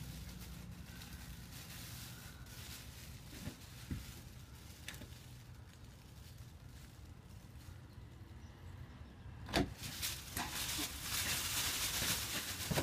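Plastic carrier bag rustling and a hand tool scraping as a wasp nest is hacked loose from a ceiling into the bag. A few faint clicks come near the middle, then a sharp knock, with louder scraping and crinkling towards the end.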